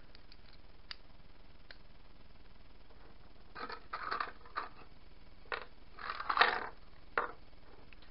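Metal bolts and nuts clinking and rattling as a hand rummages through them in a small plastic tub, then sets them down on a wooden tabletop. A few faint clicks come first; the rattling comes in short clusters in the second half, the loudest about six seconds in.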